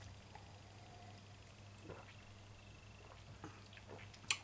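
Near silence over a low steady hum, with a few faint soft clicks and a swallow as beer is sipped from a glass.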